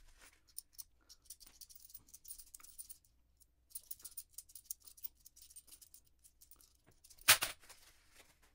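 Paper coin-roll wrapper being torn and crinkled by hand, with small clicks of quarters as the coin stack is handled. Near the end, one louder, brief rip as another wrapper is torn open.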